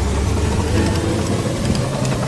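Online slot game sound effect: a deep rumbling drone while the last reels spin slowly under a fire effect, the game's build-up before a possible bonus symbol lands. The rumble is heaviest for the first half second, then settles to a steadier low hum.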